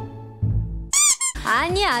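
A plucked-string comedy music cue fades out. About a second in comes a short, high squeaky sound that slides up and then down, followed by high-pitched, excited voices.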